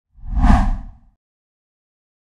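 A single whoosh transition sound effect with a deep low rumble under a hiss, lasting about a second: it swells quickly, peaks, and fades away.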